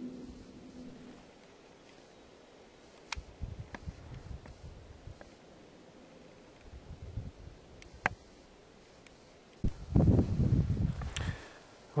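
Handling noise and rustling on a handheld camera's microphone, with a few faint sharp clicks and a louder low rumble near the end.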